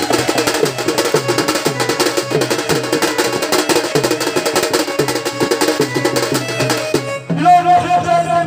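Folk dance music with fast, dense drumming and percussion. About seven seconds in, the drumming stops and a held melodic note takes over.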